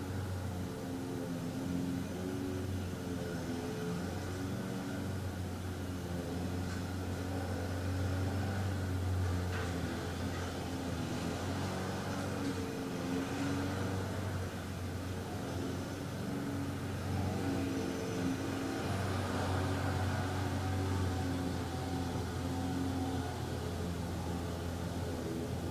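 A steady low mechanical hum with engine-like tones that shift slowly in pitch, its loudness swelling and easing slightly.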